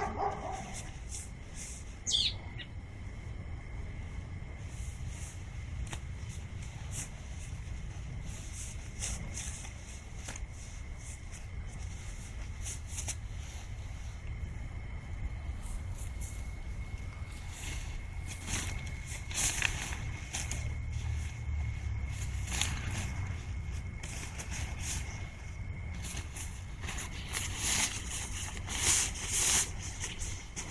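Fabric of a QuickDraw Mojave pop-up tent rustling and flapping in rapid, irregular bursts as it is collapsed, twisted into a coil and stuffed into its carry bag. A low rumble runs underneath, and a brief falling chirp sounds about two seconds in.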